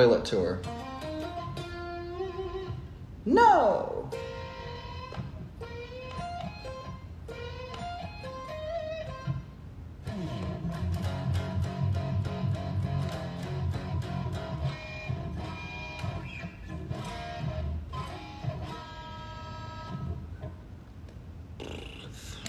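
Stratocaster-style electric guitar being played: separate picked notes and short phrases, with two quick falling pitch sweeps in the first few seconds. From about ten seconds in the playing becomes fuller and continuous.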